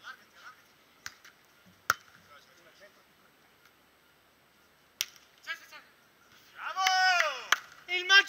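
Beach volleyball in play: sharp slaps of hands and forearms hitting the ball, a few seconds apart. Near the end a man gives a long shout.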